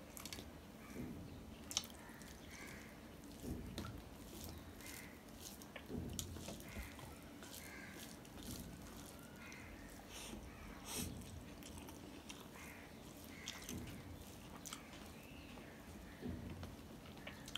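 Fingers kneading and mixing rice with curry on a stainless steel plate: soft, faint squelching with scattered sharp clicks of fingertips and nails against the metal, the loudest about 2 s and 11 s in, along with quiet chewing.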